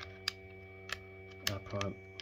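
Plastic pieces of a physical 2^4 hypercube puzzle clicking as it is turned through a move sequence. There are four sharp, separate clicks, the loudest about one and a half seconds in.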